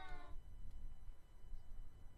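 A man's drawn-out final syllable, pitch rising slightly, trailing off about a third of a second in, then a low, steady outdoor rumble with no clear event.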